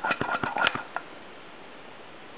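A quick run of light clicks and taps in the first second from the hand vacuum pump and valve rig being worked, then only a faint steady background.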